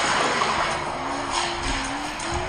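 Die-cast Hot Wheels Mario Kart cars rolling fast down a plastic gravity track: a steady rushing rattle of the wheels on the track, strongest in the first second and easing a little after.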